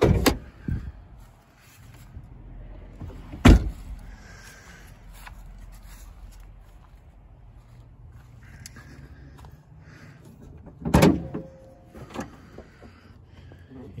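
Minivan door and hood hardware: a clunk as the hood release is pulled, then a car door slammed shut about three and a half seconds in, the loudest sound. Around eleven seconds in comes a cluster of metal clunks with a short creak as the hood latch is freed and the hood is lifted.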